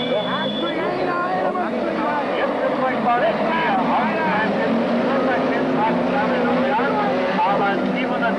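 Several stock-car engines racing on a dirt track, revving up and down, their notes overlapping in many rising and falling pitches. One holds a steadier, lower note from about halfway through.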